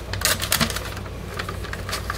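Scissors cutting a paper soap-mold liner: a run of short crisp snips, most of them in the first half second.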